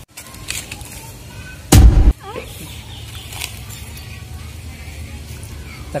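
Chickens clucking faintly in the background over a steady low outdoor rumble. A single loud, brief burst of noise cuts in about two seconds in.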